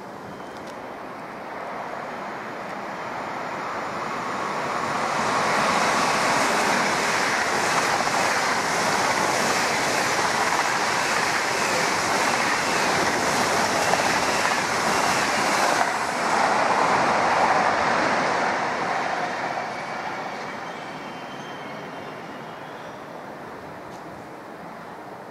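Eurostar high-speed train passing through the station without stopping: a rushing roar of wheels on rail and air that builds up and holds. The high hiss cuts off suddenly about two-thirds of the way through, leaving a lower rumble that fades as the train goes away.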